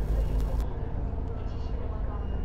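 Outdoor harbourside ambience: a steady low rumble with faint background noise.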